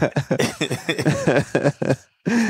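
Men laughing in quick, choppy bursts.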